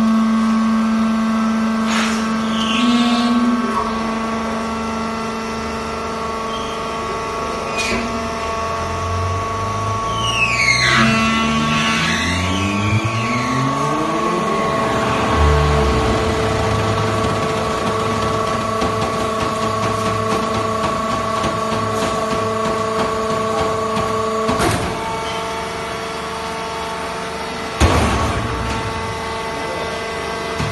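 Vertical hydraulic baler's power unit running with a steady multi-tone hum; between about ten and fifteen seconds in, several pitches glide up and down as the load on the pump changes. A couple of sharp knocks near the end, the second the loudest.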